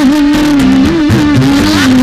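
Live dangdut band music: one long, gently wavering melody note held over kendang drum strokes.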